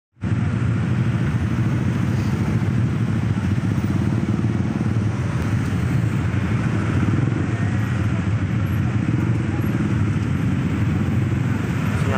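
Steady, low din of many motorcycle engines running together in dense, slow-moving port traffic, with cars among them.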